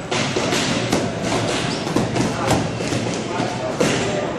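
Boxing sparring: gloved punches landing on gloves, headgear and body in a quick, irregular run of thuds and slaps, several a second.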